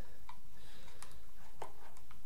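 A few faint, separate clicks of RCA phono plugs being pushed into the metal jacks of a small audio interface box.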